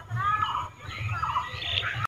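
Birds chirping, a string of short sliding calls.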